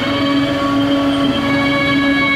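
Traditional Thai classical music accompanying a khon masked dance, with long held notes that shift pitch once about halfway through.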